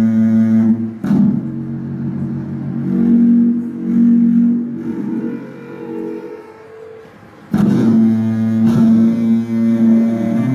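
Live music: low droning notes held for seconds at a time, rich in overtones. The sound thins and fades around six to seven seconds in, then comes back in strongly about 7.5 seconds in.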